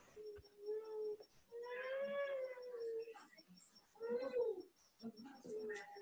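Several drawn-out animal calls, most like a cat's: a short one near the start, one long call that rises and falls about two seconds in, and a shorter rising-then-falling call about four seconds in.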